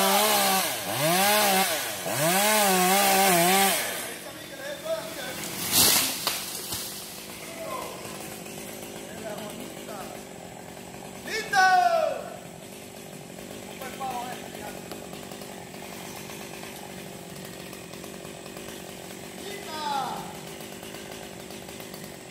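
Chainsaw revving up and back down about three times, then cutting out about four seconds in. A single sharp impact follows about two seconds later.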